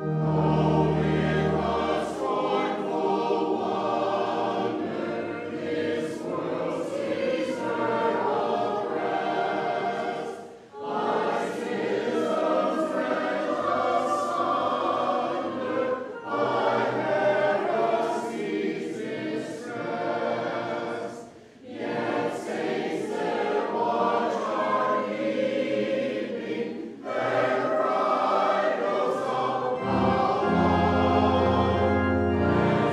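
Church congregation singing a hymn together, with short pauses between lines, about eleven and twenty-one seconds in. A low organ chord sounds under the opening.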